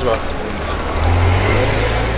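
Car engine idling, a steady low hum that grows louder about a second in.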